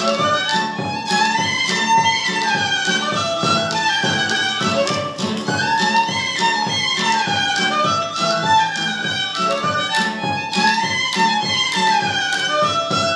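Moldavian folk dance music played by a small folk band: a fiddle carries a running melody over a steady, quick beat of drum and koboz.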